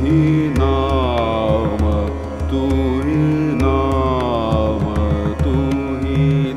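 Hindustani classical vocal: a male singer holding and gliding between notes in long ornamented phrases, over instrumental accompaniment with evenly repeating percussion strokes.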